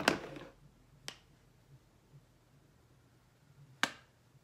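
Small sharp clicks and taps of makeup tools being handled: a short clatter at the start, a single click about a second in, and a louder click near the end.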